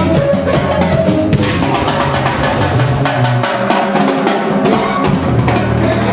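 Live jazz-rock band playing: saxophone over drums and percussion with electric bass. The deep bass drops out for about two seconds midway, then comes back near the end.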